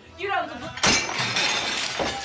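A china dinner plate thrown and smashing loudly about a second in, the breaking sound trailing off over the next second.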